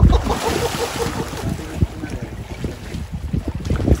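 Water splashing as a pink river dolphin lunges up out of the water for a fish and drops back. The splash is loudest at the start and fades over about a second, with wind rumbling on the microphone underneath.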